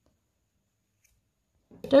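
Near silence, then a woman's voice starts speaking near the end.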